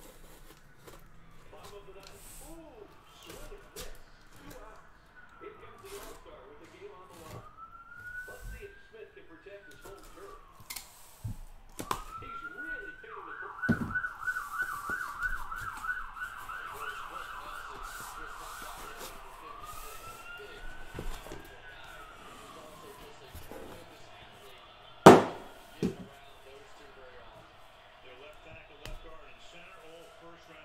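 A siren wailing in slow rising and falling sweeps, switching to a fast warbling yelp for a few seconds in the middle, then wailing again. Underneath, the scraping and clicking of a box cutter slicing the tape on a cardboard case, with one sharp knock about 25 seconds in.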